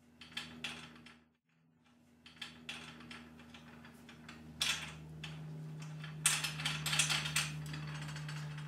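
Small metal clicks and taps of washers and nuts being fitted onto bolts and turned hand-tight on the aluminium end bracket of a Granberg Alaskan chainsaw mill. The clicks come irregularly, sparse at first and in quick clusters over the second half, over a low steady hum.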